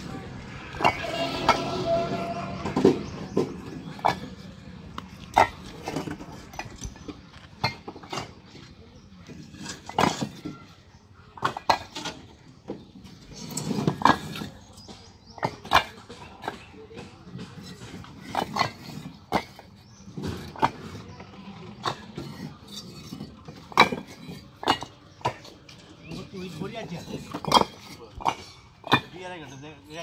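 Fired clay bricks clinking and knocking against one another as they are handled and stacked, in sharp, irregular clacks throughout.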